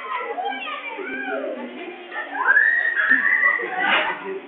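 Many young voices talking and shouting over each other, with one long high call that rises and then holds, starting about two and a half seconds in.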